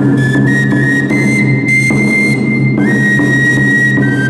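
Flute music: a high melody of held notes stepping up and down, with one long held note through the middle, over a steady low drone.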